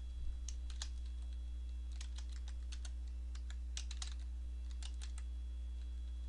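Computer keyboard typing: short clusters of irregular keystroke clicks as words are entered, over a steady low hum.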